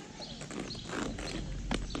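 Footsteps on a paved path, several separate steps, with a low rumble coming in about halfway.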